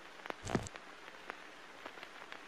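Faint crackle: soft scattered clicks over a low hiss, with one short brighter blip about half a second in.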